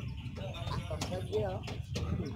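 Faint distant voices over a low, steady background rumble.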